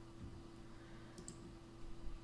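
Faint computer mouse clicks, a quick double click about a second in, as an item is picked from an on-screen list, over a low steady hum.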